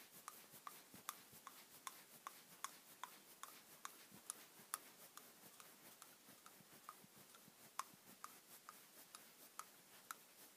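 Faint, irregular small clicks, a few each second, of a hex driver turning a screw into the black plastic spindle and suspension arm of an RC car as it is threaded in by hand.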